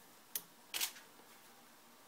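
DSLR camera shutter firing for a triggered test shot: two sharp clicks about half a second apart, the second fuller.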